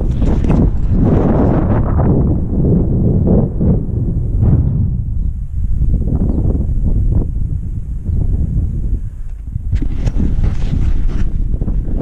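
Wind buffeting the camera microphone: loud, gusty low noise that eases for a moment around nine seconds in, with a few crackling rustles just after.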